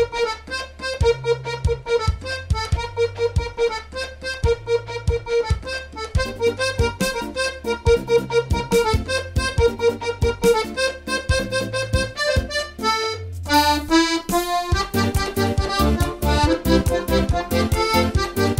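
Solo piano accordion playing an upbeat pop tune, the left-hand bass notes and chords keeping a steady beat under the right-hand melody. About thirteen seconds in, the beat breaks for a quick run of notes, then comes back busier.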